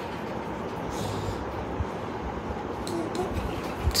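Steady low background noise with a faint rumble, and a brief faint voice near the end.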